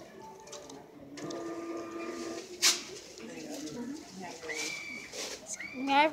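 Indistinct voices speaking in the room, not close enough to make out words, with one brief loud noise a little before halfway through.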